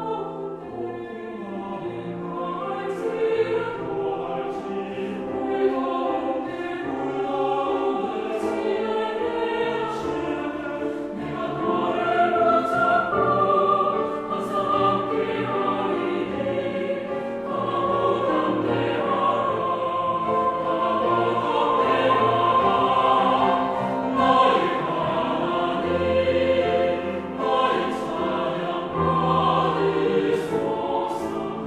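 A chamber choir singing a Korean sacred choral anthem in several-part harmony, with long held chords and the singers' s-sounds cutting through now and then.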